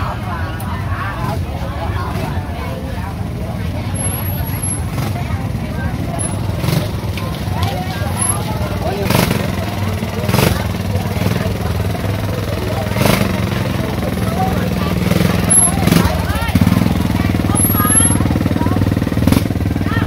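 Busy market ambience: people talking over one another, with a motorbike's small engine running close by, louder near the end, and occasional knocks and clatter.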